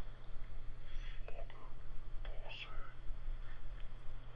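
Faint whispered voice in a few short fragments over a steady low hum, which the investigators take for an EVP: a spirit's reply that they read as "Fucking pussy... die".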